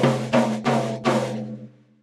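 Undampened tom-tom struck about four times in quick succession with a drumstick, each hit ringing on at a steady low pitch that slowly dies away. The drum is left free of any dampening gel, so it resonates fully. It is heard over a video-call audio link.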